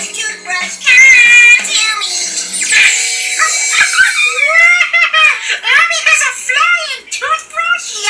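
A children's TV programme playing on a television: high-pitched voices over music, with a run of rising-and-falling, giggle-like calls in the second half.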